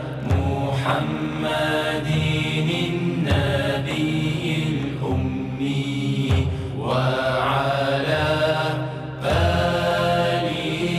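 Background music of melodic vocal chanting: a voice sings long, wavering phrases, pausing for breath every second or two, over a steady low tone.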